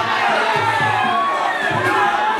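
Spectators shouting and cheering on the fighters, many voices at once, over steady background music.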